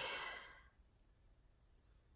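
A woman's short breathy sigh, about half a second long at the start, trailing off into near silence.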